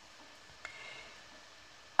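Quiet handling of knitted wool pieces and yarn: a faint click about two-thirds of a second in, then a brief soft rustle.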